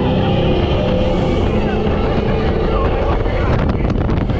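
Radiator Springs Racers ride car speeding along its track: a loud, steady rush of wind on the microphone over the car's rumble, with a few sharp knocks near the end.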